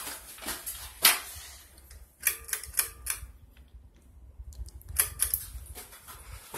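Ceiling fan running with a low steady hum, under a series of sharp, irregular clicks and ticks, bunched together about two seconds in and again near the end.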